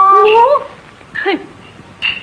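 A woman's voice in Yue opera drawing out a note that rises in pitch and ends about half a second in, then a short falling vocal cry about a second later.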